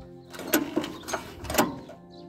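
A few sharp plastic-and-metal clicks and knocks, about four in two seconds, as the choke lever on a WEMA WM900 tiller's engine is worked by hand before starting.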